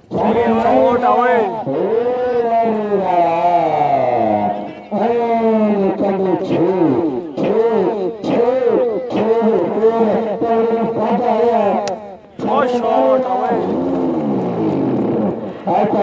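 Speech only: a commentator's voice talking almost without pause.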